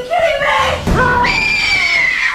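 A person screaming: short pitched cries, then, about a second in, a long high-pitched shriek.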